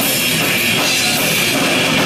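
Death metal band playing live, loud and dense: heavily distorted electric guitars and bass over a drum kit, with no let-up.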